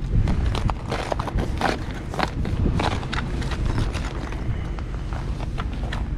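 Irregular crunching, scraping and knocking on snow and ice as a LiveScope transducer pole frozen into an ice-fishing hole is worked to break it loose.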